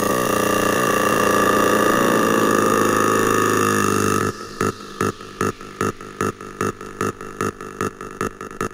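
Hardstyle music from a DJ mix: a sustained, wavering distorted synth tone for about four seconds, then a steady kick-drum beat at about 150 beats a minute comes in.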